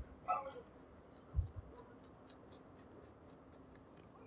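Mostly quiet room tone, with a brief faint high squeak-like sound just after the start and two soft low bumps about a second and a half in.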